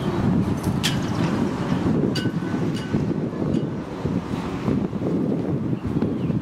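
Wind buffeting the microphone: a loud, gusty low rumble that swells just before and holds throughout, with a few faint short high chirps or clicks over it.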